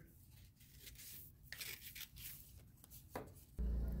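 Scissors cutting construction paper into thin strips, a few faint snips and rustles. A steady low hum comes in near the end.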